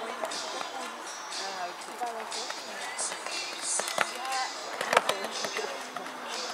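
People talking indistinctly, with a few sharp knocks in the second half, the loudest about five seconds in.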